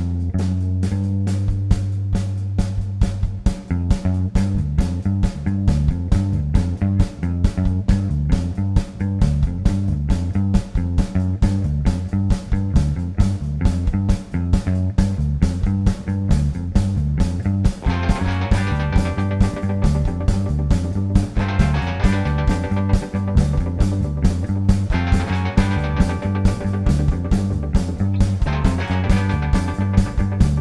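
Live rock band playing a bass-led number with no singing. A hollow-body electric bass starts alone on a strong low line, and the drum kit joins about three and a half seconds in. From about eighteen seconds, higher electric guitar phrases come in and out over the rhythm.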